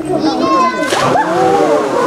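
A polar bear plunging into its pool, one sharp splash about a second in, followed by water sloshing.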